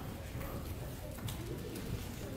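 Indistinct murmur of people talking at a distance in a room, over a low rumble of room noise.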